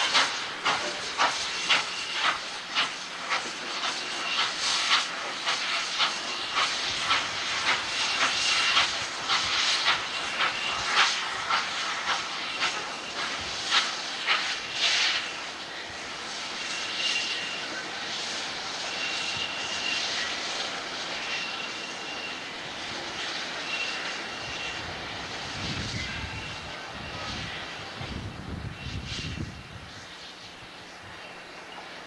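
Norfolk & Western J-class 611 steam locomotive working slowly, its exhaust chuffing about twice a second. About halfway through, the beats fade into a steady rush of steam. A high tone repeats about every second and a half, and a deep rumble swells near the end.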